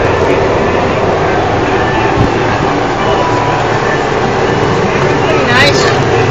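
Indistinct voices over a loud, steady rumbling background noise.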